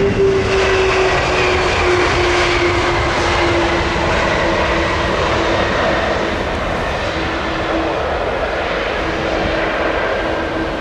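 Twin-engine jet airliner's engines on the landing roll: a broad rushing roar with a steady whine that slowly falls in pitch, loudest at the start and easing a little later on.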